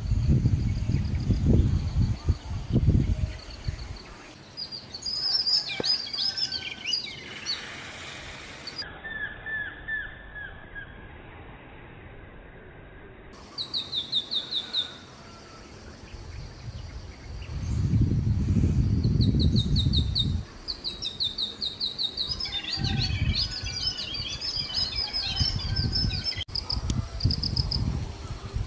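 Small songbirds chirping: repeated high chirps, with a quick run of falling notes about halfway through. A low rumbling noise comes and goes in the first few seconds and again about two-thirds of the way in.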